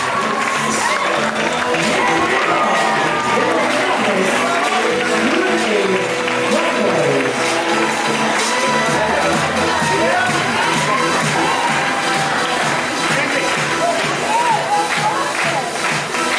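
Music playing under a crowd cheering, clapping and chattering, with many voices at once.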